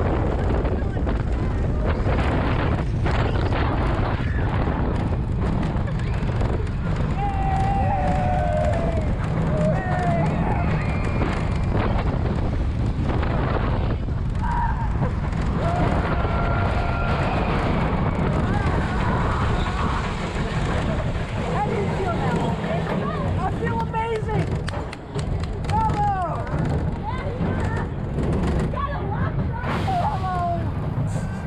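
Steel roller coaster train running through its course, heard from the front row: a steady rush of wind and a low rumble of the wheels on the track. Riders scream and yell in short rising and falling cries at several points.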